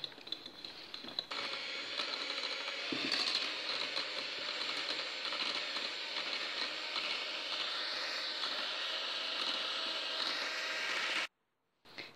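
Electric hand mixer running, its beaters whirring through butter and powdered sugar in a glass bowl while creaming them for frosting. It runs softer for about the first second, then at a louder, steady whir, and cuts off suddenly near the end.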